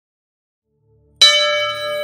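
A bell struck once about a second in, after silence; its many ringing tones hold and slowly fade.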